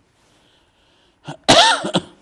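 A man coughing into his fist: a short cough about a second and a quarter in, then a louder, longer cough near the end.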